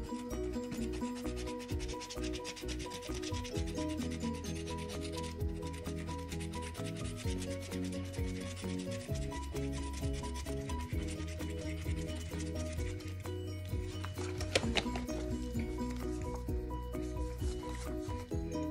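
A coin scratching the coating off a scratch-off lottery ticket in quick, continuous rubbing strokes, over soft background music.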